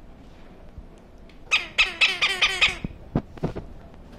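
Cuban Amazon parrot giving a rapid run of about seven harsh squawks in just over a second, then a few sharp clicks.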